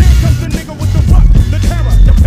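Hip-hop music: a rapped vocal over a heavily bass-boosted beat.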